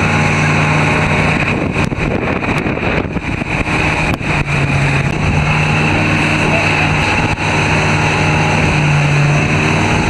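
Motorboat engine running steadily at speed while towing, over the rush of water and wind buffeting the microphone.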